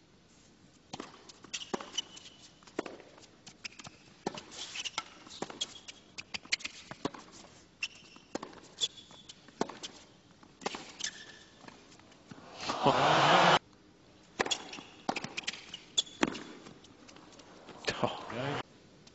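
Tennis rally on a hard court: irregular sharp pops of racket strikes on the ball and ball bounces, from a serve onward. A louder burst of noise lasting under a second comes about thirteen seconds in.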